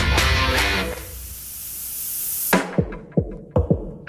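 Heavy rock soundtrack music with guitar and drums. About a second in, the band drops out for a swelling hiss, then a few quick falling tones before the full band crashes back in.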